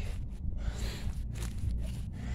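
Outdoor background with a steady low rumble and faint irregular rustling, with no speech.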